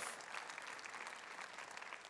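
Congregation applauding steadily.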